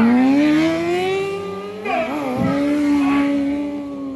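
Sport motorcycle engine revving. The pitch climbs over the first two seconds, dips briefly about two seconds in, then holds high and steady.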